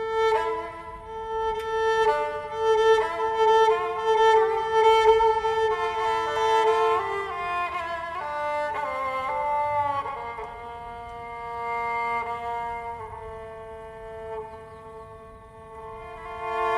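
A Greek lyra, a small pear-shaped bowed folk instrument, playing a melody over a held drone note. It starts with quick, rhythmic bow strokes, then about halfway through moves to slower held and sliding notes that grow softer near the end.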